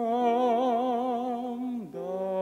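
A man's voice singing a long held note with a wide vibrato over piano accompaniment, the note sliding down near the end before he takes up the next note.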